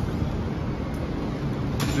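Steady low mechanical hum of the workshop's equipment, with a sharp click near the end as a glass door's latch is opened.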